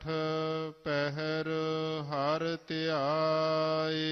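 A single voice chanting Gurbani verses of the Hukamnama in a slow, melodic intonation. It holds long notes that bend in pitch, with brief pauses about a second in and again near three seconds.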